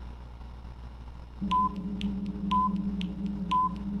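Quiz countdown timer sound effect: a short beep once a second over clicks about twice a second and a steady low drone, all starting about a second and a half in.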